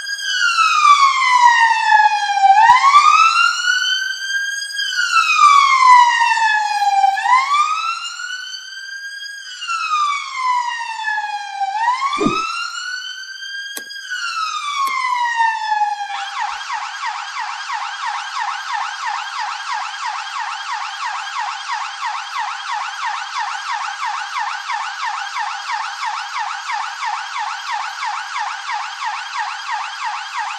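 Electronic police siren of a toy police jeep. It wails slowly up and down, then about halfway through switches abruptly to a fast, steady yelp.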